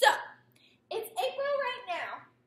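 A woman talking: a short, sharp vocal exclamation at the start, then a phrase of speech about a second in.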